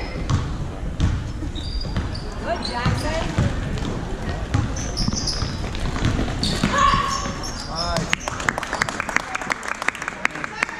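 Basketball dribbled on a hardwood gym floor with repeated thumps, sneakers squeaking, and voices calling out from the court and sidelines, all echoing in a large hall.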